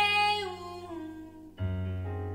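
Live band music: a woman's voice holds a long, high sung note that fades within the first half second, over a sustained low bass note. A new low note is struck sharply about one and a half seconds in.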